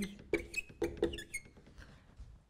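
Marker pen squeaking and tapping on a whiteboard as digits are written: a quick run of short squeaks and taps that fades out in the second half.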